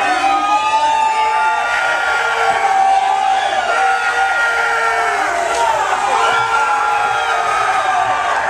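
Concert crowd cheering and screaming, many voices overlapping in long, held high calls.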